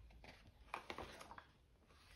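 Faint rustle and soft taps of a picture book's paper page being turned, in a few short strokes about a second in.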